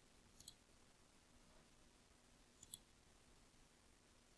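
Near silence with two faint computer mouse clicks, each a quick double tick, about half a second in and again near three seconds.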